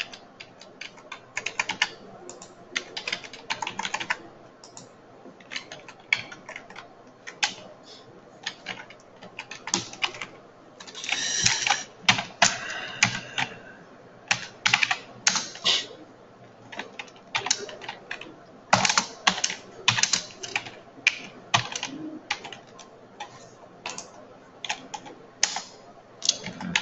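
Typing on a computer keyboard: irregular key clicks in short bursts as commands are entered.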